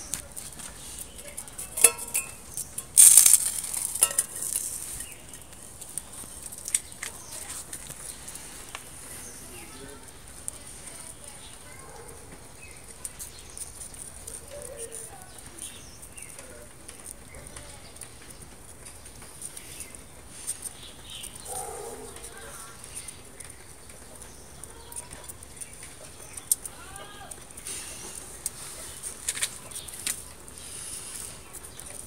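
Wood fire in a small can stove crackling and hissing, with sharp pops, a burst of loud ones about three seconds in. Short bird chirps come and go in the background.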